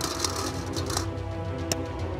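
Background music with a steady bass, over which draw balls click against each other and the glass bowl a few times as one is picked out by hand.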